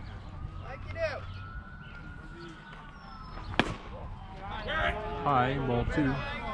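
A single sharp crack of a pitched baseball striking, about three and a half seconds in, followed by players and spectators calling out.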